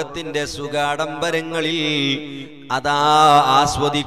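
A man's voice in the sung, chant-like delivery of a Malayalam Islamic sermon: held, melodic phrases broken by short pauses.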